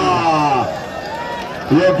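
Men's voices shouting in long, drawn-out calls that fall in pitch and die away well before a second in, leaving a low crowd hubbub. Shouting breaks out again near the end.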